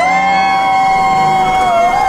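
Riders screaming during the ride's simulated plunge: long, high, held screams that rise at the start and stay steady, one voice wavering near the end, over the ride's low rumbling soundtrack.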